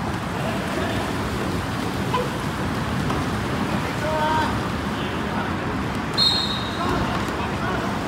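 Steady outdoor rushing noise with faint, distant voices of canoe polo players calling out on the water. A short high whistle sounds about six seconds in.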